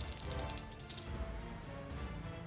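Clinking jingle of many coins dropping onto a pile, a sound effect laid over music; the clinking stops about a second in and the music carries on.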